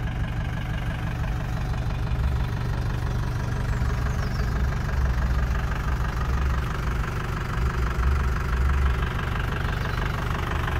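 A diesel engine idling steadily with a low, even rumble, most likely the converted LDV minibus's own engine.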